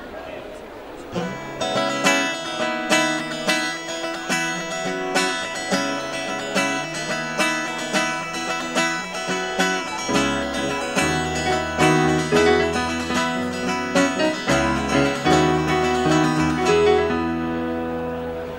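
Acoustic guitar playing a song's instrumental intro, notes picked in a steady rhythm. Deeper bass notes join about ten seconds in.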